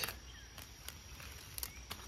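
Faint outdoor background with a thin, steady, high insect drone and a few light ticks.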